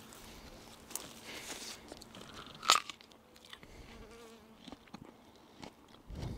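A crisp bite into a raw Queen of Malinalco tomatillo, loudest as a single sharp crunch about two and a half seconds in, with soft chewing around it. A small insect buzzes faintly about four seconds in.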